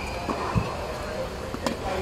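A tennis racket striking a ball on a forehand, one sharp crack late in the stretch, after a dull thud about half a second in.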